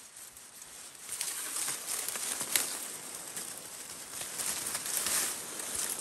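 Dry cattail stalks and reeds rustling and crackling as a cattail head is worked off its stalk, with scattered clicks and one sharp click about two and a half seconds in.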